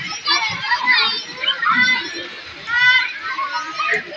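Crowd of children playing in a swimming pool, shouting and calling out, many high voices overlapping.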